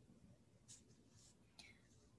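Near silence: faint room tone, with two faint brief hisses about two-thirds of a second and a second and a half in.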